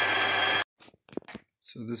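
Metal lathe running, its boring bar cutting out a steel plate bolted to the spinning faceplate: a steady hum with a high whine. It cuts off abruptly about half a second in, followed by a few faint clicks.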